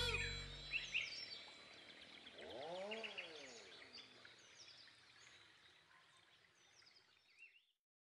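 Tail of a music sting fading out, then faint bird-like chirping from an animated TV ident's soundscape, with one low call that rises and falls in pitch about three seconds in. The sound dies away in the second half.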